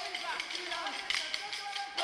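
Short wooden Kolkali sticks striking together in sharp clacks, over group singing.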